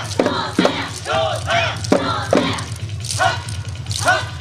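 Many dancers shouting short chant calls in unison in a quick rhythm, over dance music with a steady beat and a few sharp strikes.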